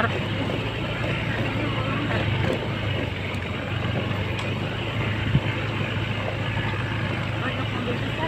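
Motorcycle engine running steadily with wind and road noise while riding over a rough, unpaved road surface. There is a brief knock about five seconds in.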